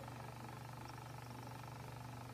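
A steady low hum with a faint even hiss, unchanging throughout, with no distinct knocks or voices.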